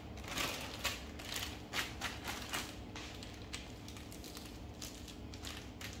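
Thin plastic shopping bag crinkling and rustling under the hands as the marinated chicken inside it is pressed flat on a countertop, in irregular bursts that thin out over the last few seconds.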